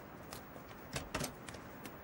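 Faint footsteps of hard-soled shoes on a stone floor: a handful of short, sharp clicks at an uneven pace over low background noise.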